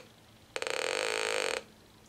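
Buzzy tone from a homebrew 555-timer audio oscillator (VCO) driven by a resistive antenna bridge, played through a small speaker. It starts choppily about half a second in, sounds for about a second as the antenna coupler's variable capacitor is turned, then cuts off: the tone dying out marks the null, with the coupler tuned for low SWR.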